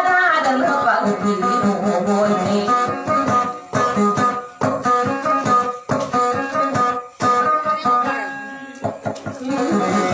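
Acoustic guitar playing a plucked instrumental passage of single notes and strummed chords, with a sung line trailing off in the first second.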